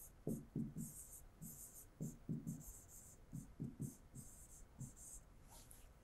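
A pen writing a word on an interactive whiteboard screen: faint, irregular taps and short scratchy strokes, about a dozen in all.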